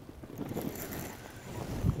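Wind buffeting the microphone: a steady low rumble with no distinct events.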